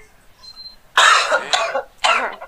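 A person coughing: one loud, rough cough about a second in, and another starting just at the end.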